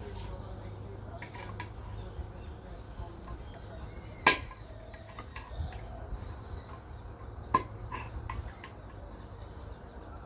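Small metal paint tins clinking as they are handled, with a sharp clank about four seconds in and another about three seconds later, over a low steady hum.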